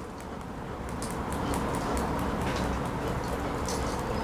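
Steady room noise: a low hum under an even hiss, with a few faint clicks.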